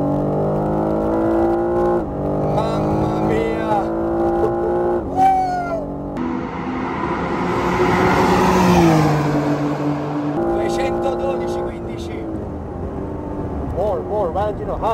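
BMW M3 Competition's twin-turbo inline-six accelerating hard, heard inside the cabin: the revs climb, drop at an upshift about two seconds in, and climb again. Midway the car is heard from trackside going by at speed, its note falling as it passes. Then the cabin sound returns, the revs climbing with another upshift near the end.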